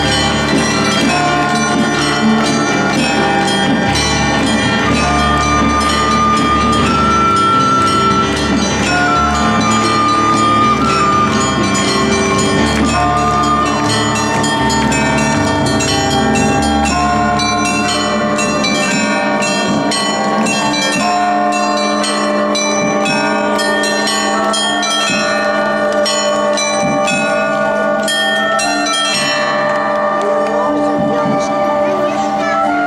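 An ensemble of kanteles (plucked table zithers) playing a folk tune that imitates church bells: many overlapping ringing plucked notes in a continuous bell-like pattern. The low notes thin out about two-thirds of the way through.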